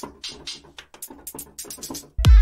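Closed hi-hat sample from a drum sampler, played on its own as a quick, uneven run of short ticks.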